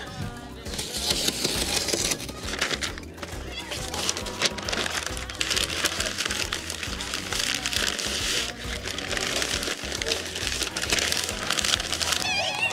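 Background music over the crinkling and rustling of butcher paper being folded and wrapped tightly around a rack of glazed ribs.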